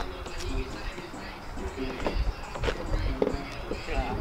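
Faint voices talking in the background, with a few light knocks.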